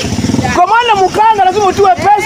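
A man talking loudly and emphatically, with a motor vehicle's engine heard briefly under the first half-second.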